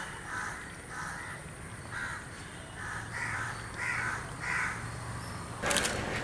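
Crows cawing over and over, about two caws a second, the caws louder around the middle. Shortly before the end a loud rough noise cuts in.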